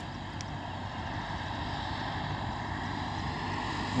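Propeller-driven light aircraft approaching low, its steady engine drone slowly growing louder as it nears.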